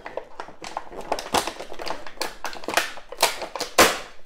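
Moulded plastic packaging tray crackling and clicking as a hand rummages in it, in a quick irregular run of small clicks, with a louder snap just before the end.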